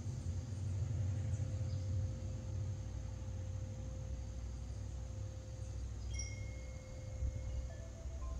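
Hanging metal tube wind chimes ringing faintly, one tone held throughout and a few new notes struck about six seconds in, over a steady low rumble.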